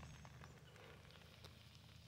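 Near silence: faint outdoor background with a few soft ticks.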